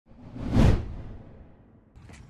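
Intro whoosh sound effect over a title card, swelling to a peak about half a second in and fading away over the next second.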